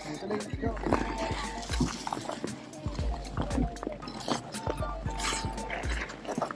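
Outdoor skating rink ambience: music and the voices of other skaters in the background, with scattered clicks and scrapes of skate blades on the ice and a low rumble of wind on the microphone.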